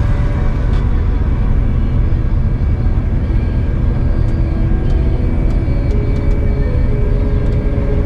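Steady low rumble of a Claas Lexion 8800TT combine harvester heard from inside its cab, the engine and threshing machinery running under load while cutting barley.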